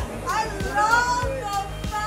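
A woman's high-pitched laughter over background music with a steady beat.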